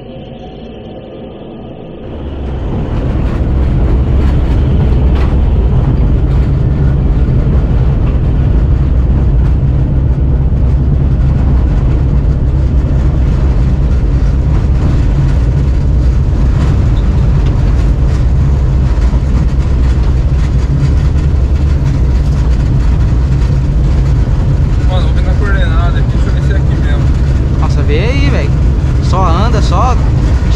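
Steady, loud rumble of a car driving along a dirt road, heard from inside the cabin. It comes up over the first few seconds, then holds steady.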